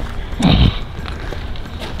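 Footsteps crunching on railway ballast gravel, with one short, loud low thump about half a second in.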